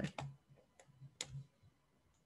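A few faint, short computer clicks over about a second, the last the loudest, as presentation slides are paged back.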